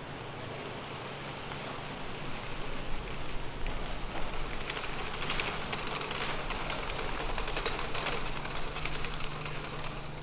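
Steady outdoor background noise, a hiss with a faint low hum underneath, growing somewhat louder from about three seconds in.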